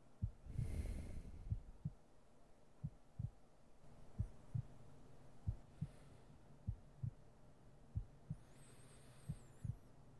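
Slow heartbeat, each beat a soft low lub-dub pair, coming about every 1.3 seconds, roughly 45–50 beats a minute. A soft breath-like rush of noise comes about a second in, and a faint hiss near the end.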